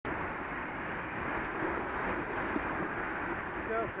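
Steady wind rush over a bicycle-mounted camera's microphone while riding, mixed with road traffic noise; it starts abruptly. A man's voice begins speaking near the end.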